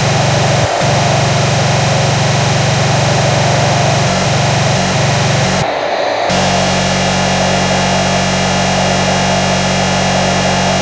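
Extratone hardcore electronic music: a loud, dense wall of distorted sound, its kick drums so fast they merge into a steady buzzing drone. Most of it cuts out briefly about six seconds in.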